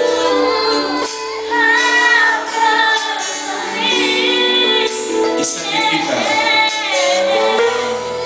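Worship music: a woman singing a melody with long held notes over instrumental accompaniment.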